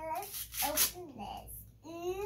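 A young child speaking a few short, unclear words, with a brief hissing or rustling burst between them.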